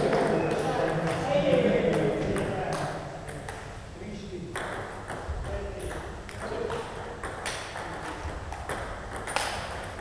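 Table tennis balls clicking sharply and irregularly against tables and bats, the clicks coming thicker near the end as a rally starts. Voices talk through the first few seconds.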